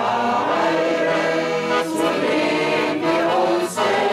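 A group of amateur singers singing a folk song together in unison, with accordion accompaniment, in sustained, held notes.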